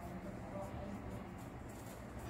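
Faint scratching of a ballpoint pen drawing short strokes on notebook paper, over a steady low hum.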